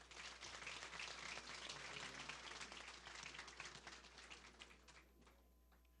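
Faint audience applause, a dense patter of many hands clapping, that thins and dies away about five seconds in.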